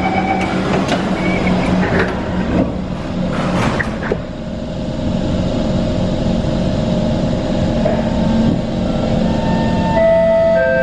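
Singapore MRT C151 train pulling out of a station, heard from inside the car. A few knocks and clatters in the first four seconds over a steady low hum, then the traction motors' whine starts and builds as the train accelerates away.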